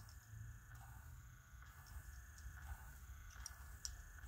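Faint whirring and light clicks of the Rock Santa's dance motor and mechanism, in short swells that rise and fall in pitch as the figure sways from side to side.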